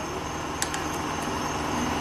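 Steady low hum and hiss of background machine noise, with one faint click about half a second in.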